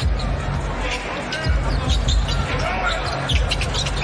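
Arena sound during live basketball play: steady crowd noise over the thumping bass of arena music, with a basketball dribbled on the hardwood court.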